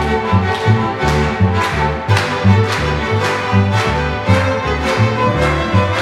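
String orchestra of violins and cellos playing an instrumental passage without voice. Short repeated bass notes keep a steady rhythm under regular accented bow strokes.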